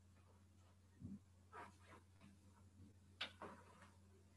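Near silence: room tone with a faint steady hum and a few faint soft ticks.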